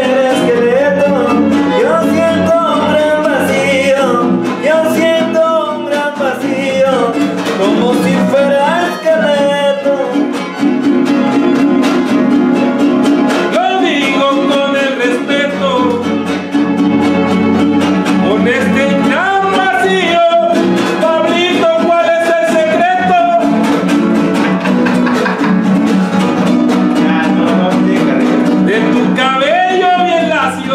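Live son huasteco (huapango) music: strummed guitars and a violin, with a sung verse whose melody glides up and down.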